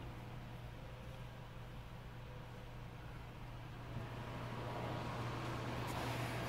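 Quiet room tone: a steady low hum under a faint hiss, growing slightly louder in the last two seconds.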